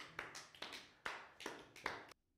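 A small group of three people clapping by hand, the applause thinning out to a few scattered claps.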